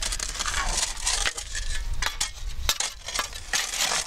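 Steel shovel digging into gravelly beach sand among cobbles: repeated, irregular crunching and scraping strokes as the blade is driven in and worked.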